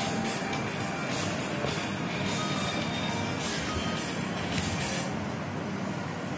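Steady background noise with a low rumble and a few brief, faint tones.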